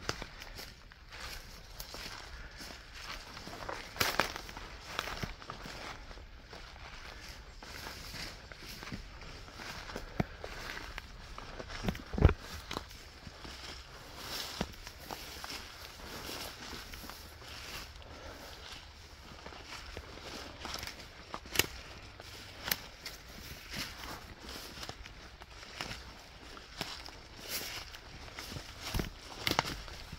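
Footsteps crunching and rustling through dry leaf litter and undergrowth at a walking pace. There are a few sharper snaps or knocks along the way, the loudest about twelve seconds in.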